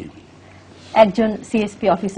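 Speech: a brief pause with only a faint steady low hum, then a person talking from about a second in.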